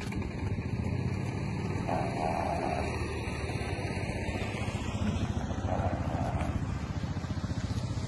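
A steady low motor rumble, like an engine running, with two brief, softer sounds about 2 and 6 seconds in.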